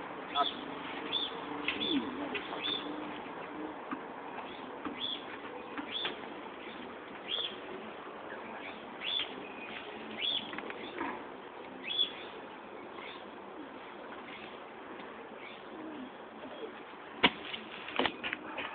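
A small bird chirping repeatedly, short high notes about once a second, with a single sharp knock near the end.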